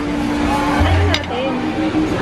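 Background voices of people talking in a busy café, over a steady hum and a low rumble. There is a single sharp click just past a second in.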